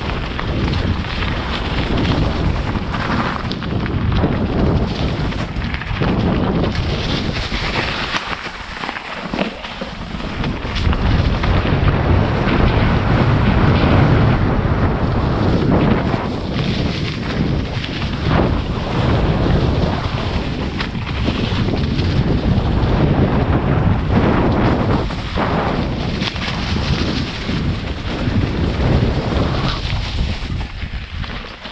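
Wind buffeting the microphone of a GoPro action camera on a mountain bike descending a forest trail, with the tyres rolling and crunching through dry fallen leaves and the bike knocking over rough ground. The rumble swells louder for a few seconds near the middle.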